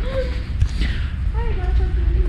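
Faint, indistinct voices over a low steady rumble in an underground parking garage.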